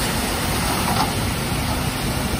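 Dump truck engine running steadily while its raised bed tips out a load of soil.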